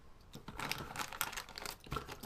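Clear plastic parts bag crinkling as it is picked up and handled, a run of small irregular crackles starting about half a second in.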